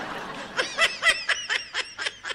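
A person laughing: a breathy hiss, then a quick run of short, high-pitched giggles.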